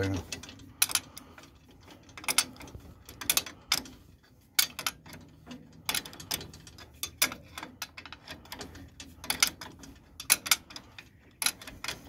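Adjustable wrench clinking on a nut of a steel cultivator mounting clamp as it is worked and reset on the nut: a series of sharp, irregular metallic clicks.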